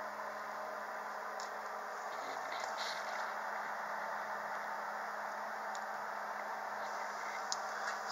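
Steady background hiss with a faint constant hum and a few faint clicks.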